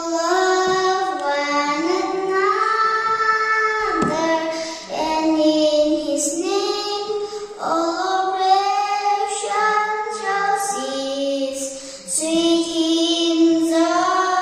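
A young girl singing solo with long held notes and short breaks for breath about four and a half, eight and twelve seconds in.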